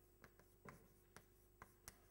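Faint chalk writing on a blackboard: a handful of short taps and scratches as a word is written out.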